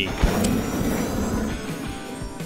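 Background music under a rushing, noisy sound effect that starts with a click and fades away over about two seconds.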